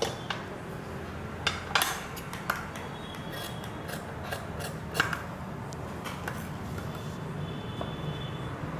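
Large tailoring shears snipping through coat fabric: irregular sharp blade clicks, some in quick pairs, spaced out across the few seconds.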